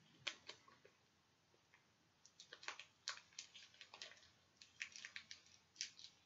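Faint, scattered clicks and crinkles of a trading-card pack's wrapper being worked open with scissors, coming in small clusters about two and a half seconds in and again near the end.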